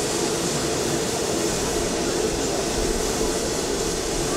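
Steady running noise of a parked jet aircraft: an even rush with a constant low hum underneath.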